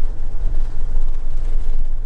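A motorhome driving along a narrow tarmac road, heard from inside the cab: a steady low engine drone with road rumble.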